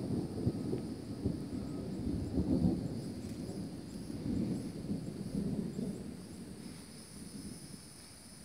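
Rolling thunder, a long low rumble that swells in the first few seconds and slowly dies away toward the end. A steady high insect buzz carries on underneath.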